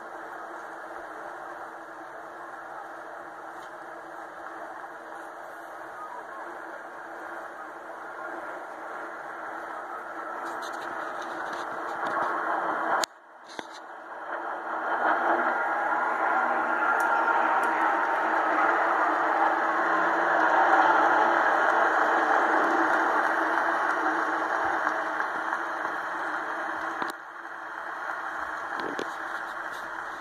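Jet aircraft flying over in formation: a steady rushing engine roar that cuts out briefly about halfway, then swells to its loudest and slowly fades as the aircraft pass overhead.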